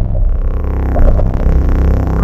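Harsh industrial noise music: a loud, dense droning hum with a heavy deep low end, many steady tones stacked over it and a faint static hiss on top.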